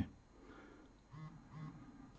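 Two short, soft hums from a man's voice, each rising and falling in pitch, about half a second apart, over faint room tone.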